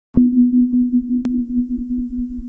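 A steady electronic tone with a fast pulsing throb underneath, starting abruptly just after the beginning, with two sharp clicks in the middle.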